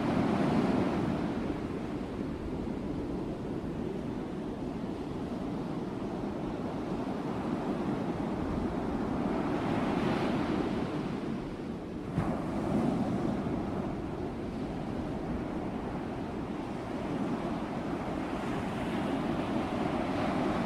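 Small sea waves breaking and washing on the shore, a steady surf noise that swells and eases every few seconds.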